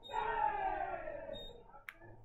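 A single long shout from the ballpark, sliding slowly down in pitch for about a second and a half, then a short sharp click near the end.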